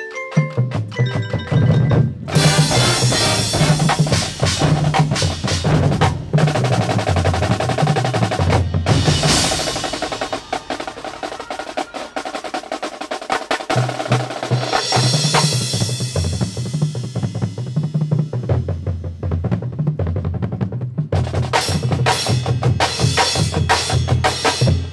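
Marching band percussion section playing a drum feature: rapid snare drum strokes and rolls over tuned bass drums that move between pitches, with cymbal crashes about nine and fifteen seconds in and short breaks near two and twenty-one seconds in.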